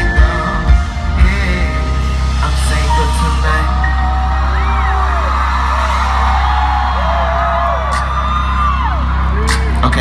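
Live concert music over a large PA: heavy bass beats stop about a second in, leaving a held low bass note under a crowd whooping and yelling.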